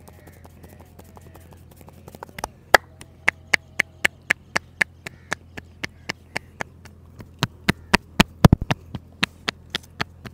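Sharp percussive slaps of a masseur's hands striking a man's head in a head-massage tapping technique, about four a second, starting about two and a half seconds in. A faster, louder run of strikes comes near the end.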